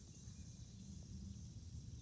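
An insect chirping in a high, very even pulse about five times a second, over a low rumble.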